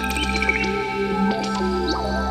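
Background music score of steady held tones, with short gliding high notes over them.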